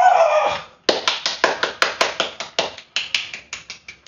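A vocal sound ends in the first second, then a run of quick hand claps, about five a second, growing fainter over three seconds.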